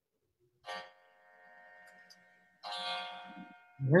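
Two short electronic chime tones about two seconds apart, each a steady pitched sound that fades out; the second is louder and fuller.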